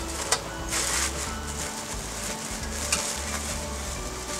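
Packaging being handled and opened: a sharp click, then a brief burst of crinkling rustle about a second in and lighter rustling after it, over soft background music.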